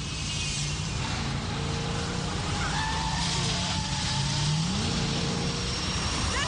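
Car engine running steadily, heard from inside the cabin in a film soundtrack; near the end its pitch rises as the car speeds up.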